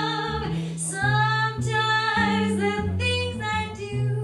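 Female jazz vocalist singing long held notes, one sliding up about a second in, over a swing quintet of double bass, piano, vibraphone and guitar.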